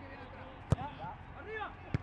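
A football struck hard once, about three-quarters of a second in, as a corner kick is crossed, and a second sharp ball contact near the end. Players shout over it, their voices carrying clearly in a stadium with empty stands.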